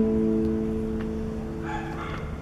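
A chord on a nylon-string classical guitar ringing on and slowly dying away between sung lines.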